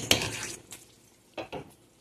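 A few light clicks and rattles of kitchenware being handled. They fade to near quiet within half a second, and one short soft noise follows about one and a half seconds in.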